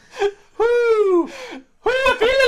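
A man's long, high vocal wail that slides down in pitch as laughter dies away, then a second drawn-out wail that starts near the end.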